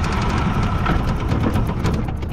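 Small old outboard motor catching and running roughly for a couple of seconds after being started, then fading out near the end as it stalls again. The motor keeps shutting off after it starts.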